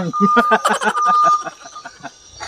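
A steady, high electronic beep tone sounding in short on-off pulses, twice, over a man laughing. Both fade out about one and a half seconds in.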